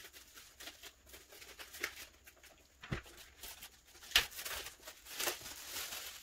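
Plastic shrink-wrap crinkling as it is pulled off a boxed photobook set and the box is handled, with scattered small clicks and a couple of knocks, the loudest about four seconds in.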